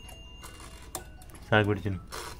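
Faint clicks from the mechanical dial of a Prestige air fryer being turned by hand, then a short spoken word about one and a half seconds in.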